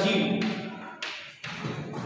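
Chalk writing on a blackboard, with a sharp tap of the chalk against the board about a second in.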